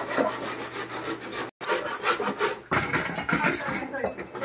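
Hand-cranked ice shaver shaving a block of ice, a rhythmic rasping scrape with each turn of the crank. The sound drops out for a moment about one and a half seconds in.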